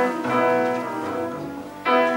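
A small acoustic ensemble plays a slow tune: grand piano, plucked double bass and clarinet. Near the end the music dips briefly, then a new phrase comes in.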